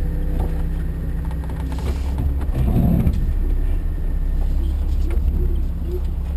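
Jeep engine running at steady low revs as it crawls over rough gravel, with a low rumble throughout and scattered knocks from the rough ground. A louder bumpy patch comes about halfway through.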